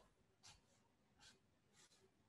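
Near silence, with three faint scratches of a felt-tip marker writing on paper.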